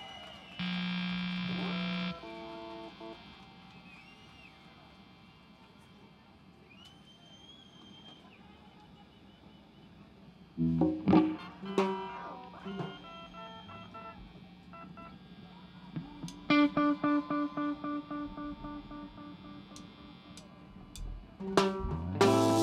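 A live rock band playing sparse, loose material on stage: a loud held chord about a second in, scattered electric guitar notes through effects, a few strummed chords about halfway, then a run of evenly repeated picked notes, about three a second, in the second half.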